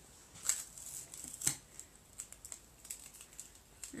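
Irregular light taps and clicks of craft materials being handled on a table as sticky eyes are pressed onto egg-box card, with the sharpest tap about one and a half seconds in.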